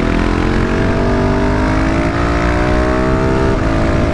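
KTM motorcycle engine pulling under throttle, its pitch climbing slowly through one gear, then dropping at a gear change near the end. Wind rumbles on the microphone throughout.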